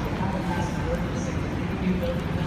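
Steady outdoor background noise with a faint, distant voice in it.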